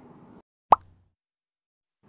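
A single short pop sound effect, a quick gliding bloop, dropped in at an edit.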